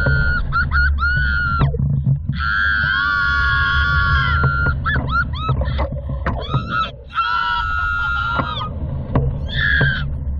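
Riders on a SlingShot reverse-bungee ride screaming: long, high-pitched held screams, the longest about two and a half seconds, with shorter rising and falling cries between them. A steady low rush of wind runs underneath.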